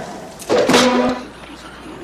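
A brief loud vocal cry from a film soundtrack about half a second in, followed by a quieter stretch with faint film audio.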